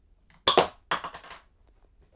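A 3D-printed syringe rocket launcher fires: one sharp, loud snap as the vacuum in the sealed syringe yanks the barrel up off its plunger and launches it. About half a second later comes a second, longer rattling clatter, followed by a few faint ticks.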